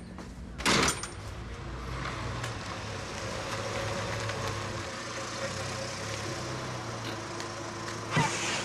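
A front door slams shut in one sharp bang about a second in. After it comes a steady outdoor background noise with a low hum.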